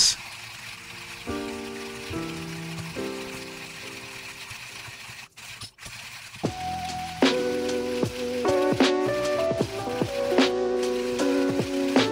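Hario hand coffee grinder being cranked, a steady crunching of beans, under background music that gets louder about halfway through.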